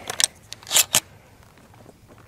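A 12-gauge slug shell being thumbed into the magazine of an Ithaca Model 37 pump shotgun through its bottom loading port: a few short metallic clicks and scrapes in the first second as the shell is pushed past the shell stop.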